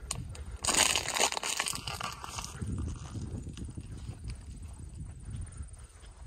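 Crunching and rustling of dry weeds and brush while walking through them, loudest in the first two seconds, then fainter crackling over a low rumble.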